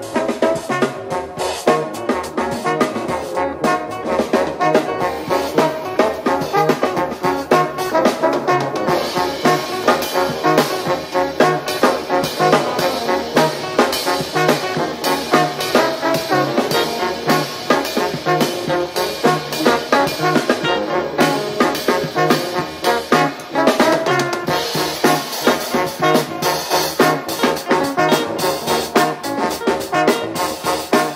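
Live jazz band playing, with a trombone taking the lead over a rhythm section of drum kit and bass.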